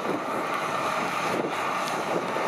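Kubota DC-105X combine harvester running as it cuts rice: a steady mechanical noise, with wind buffeting the microphone.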